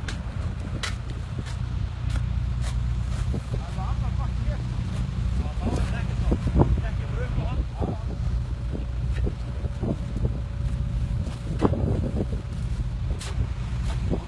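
Toyota Hilux 6x6's engine running steadily under load as it tows a pickup out of a hole in lake ice, a low rumble throughout, with scattered clicks and faint voices.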